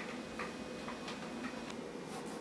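A few faint, unevenly spaced light clicks over a low steady hum.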